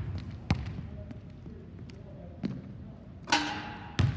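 Basketball being dribbled on a hardwood gym floor during a step-back move: a few sharp bounces at uneven spacing, echoing in the hall. A louder impact with a brief ringing comes near the end.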